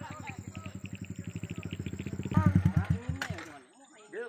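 Small motorcycle engine running with a fast, even pulse, louder about two and a half seconds in, then stopping shortly before the end.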